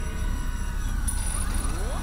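Steady low rumble with thin sustained tones and a few sliding pitch sweeps, one gliding upward near the end: a produced sound bed under a network end card.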